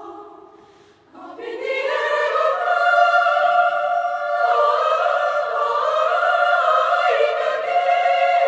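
Girls' choir singing: a phrase dies away almost to nothing about a second in, then the voices come back in softly and swell into loud, sustained chords that shift in pitch twice.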